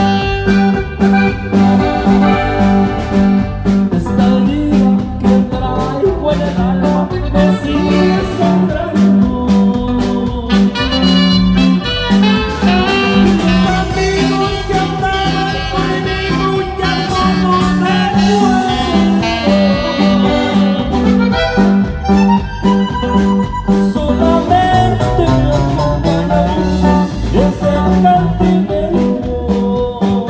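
Live norteño band playing an instrumental break of a corrido: a melody line over plucked-string rhythm, bass and a steady drum beat.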